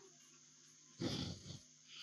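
Near quiet, broken about a second in by one brief vocal sound of about half a second from a man at the microphone.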